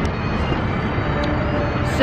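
Steady low rumbling outdoor noise: wind on the microphone mixed with road traffic.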